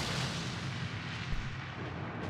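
A sound effect from the anime episode's soundtrack: a steady, dense rushing noise with no pitch to it, easing slightly toward the end.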